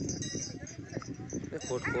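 Several men's voices talking and calling out in the open, overlapping, with one louder voice starting near the end.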